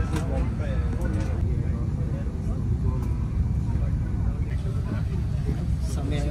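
Steady low rumble inside an Airbus A350 cabin on the ground, with faint voices in the background.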